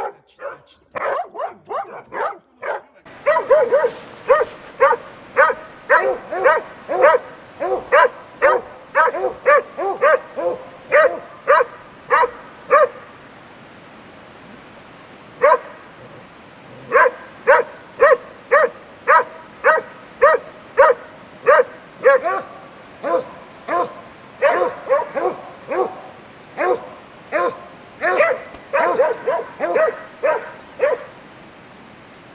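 Boar-hunting dog baying at a wild boar: a long, steady run of loud barks, about two a second. The barking breaks off for a couple of seconds midway, then resumes. The first few seconds are a separate short burst of barking from a kennelled dog, with a quieter background.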